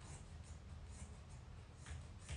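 Scissors cutting through a thick fabric throw: a few faint, short snips and rustles of the cloth.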